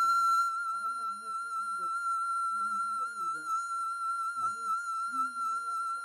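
A steady high tone held at one pitch with a slight waver, with people talking quietly beneath it.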